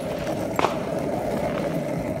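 Skateboard wheels rolling on asphalt, a steady rolling rumble, with one sharp click just over half a second in.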